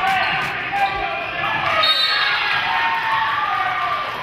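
A basketball bouncing on a hardwood gym floor, with overlapping voices of players and spectators echoing in the gym.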